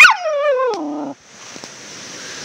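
Young Samoyed giving one drawn-out vocal call that starts high and slides down in pitch over about a second, then breaks off.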